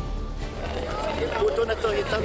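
People's voices talking from about half a second in, over background music.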